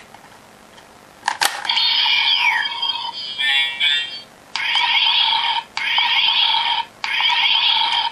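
A click, then electronic sound effects from a Kamen Rider Dragon Knight toy vehicle's small speaker, set off by the card inserted into it. First comes a burst of beeping tones with a falling sweep, then three repeats of a warbling electronic sound, each about a second long.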